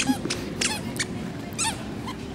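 High-pitched squeaks from a toddler's squeaky sandals as she walks, two clear squeaks about a second apart.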